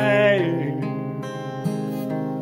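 Acoustic guitar strummed in a country song, a chord ringing and fading with a fresh strum about a second and a half in. A man's sung note trails off at the start.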